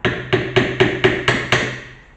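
Seven quick hammer blows, about four a second, on the handle of an upholstery tack lifter, driving its forked tip under a staple in the wooden frame of a stool to pull it out.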